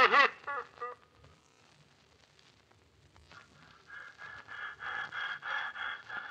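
The last of a music cue dies away in the first second, then near silence. From about four seconds in comes rapid, rhythmic panting, about three or four breaths a second: the invisible beast breathing hard as the chloroform takes effect and puts it to sleep.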